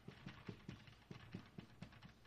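Faint light taps in quick succession, about four or five a second.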